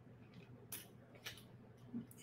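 A few faint, light clicks of small metal jewelry findings handled between the fingers: a copper fern leaf charm being attached as a dangle beneath a wire-wrapped owl bead.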